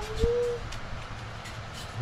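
A dove cooing once, briefly, in the first half-second: a single soft, slightly rising note. After it there is only a faint low hum with a few light clicks.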